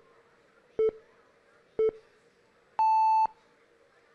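Quiz-show countdown timer beeps: two short low beeps a second apart, then one longer, higher beep about three seconds in, the typical signal that answer time is up.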